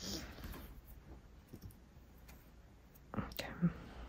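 Faint small clicks and a brief swish of nail-stamping tools being handled, with a short whispered murmur about three seconds in.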